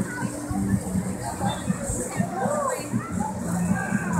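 Children calling and shouting as they play in a crowded pool, over a steady background of many voices.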